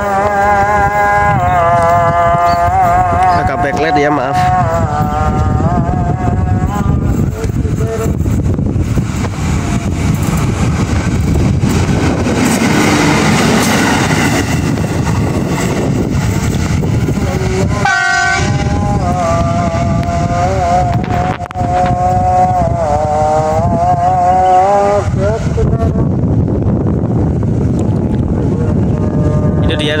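Track-measurement rail car running along the line with its engine and wheels rumbling on the rails. Its horn sounds in long, wavering blasts: once at the start and again from about 18 to 25 seconds.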